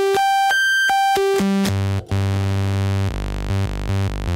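1973 MiniKorg 700 monophonic analog synthesizer playing: held notes that leap up an octave or more and back down, then a long low note, then a quick run of short low notes, about four a second, near the end.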